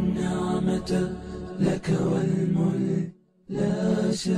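Voices chanting together in a steady, pitched religious chant, with a low drone beneath for the first second and a half. The sound cuts out briefly a little after three seconds, then resumes.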